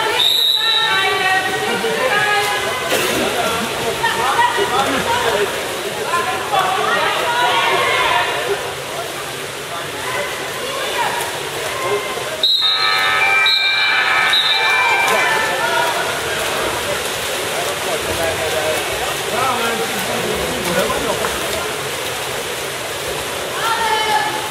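Voices calling out and chatting over the splashing of water polo players swimming and contesting the ball in an indoor pool.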